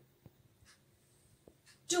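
A quiet pause in a small room with a few faint short clicks. A woman's voice starts again right at the end.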